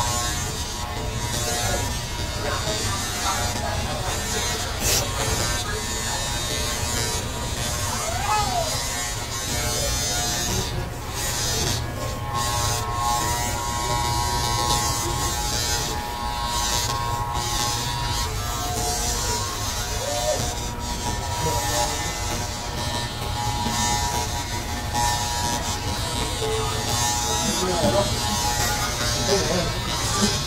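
Corded electric hair clippers buzzing steadily as they cut a child's hair.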